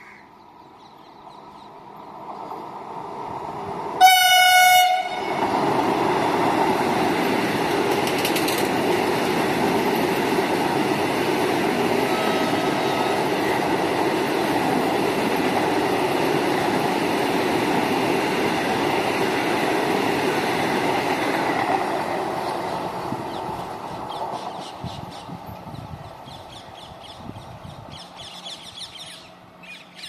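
Vande Bharat Express electric trainset approaching and passing at high speed. Its rush builds over the first few seconds, then a single loud horn blast sounds about four seconds in, followed by a steady rush of wheels and air for about fifteen seconds that fades away near the end.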